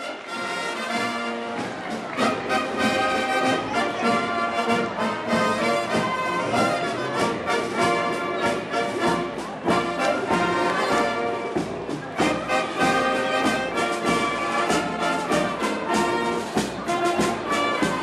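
Military marching band playing a march: sousaphones, trumpets and other brass over a steady bass-drum beat.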